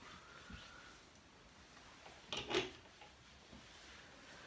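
Quiet handling of clothes on hangers, with one short, sharper sound about two and a half seconds in.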